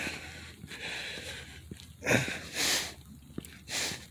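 Breathing close to the microphone of someone walking: three short, noisy breaths, about two seconds in, a little later, and near the end, with a few faint footsteps.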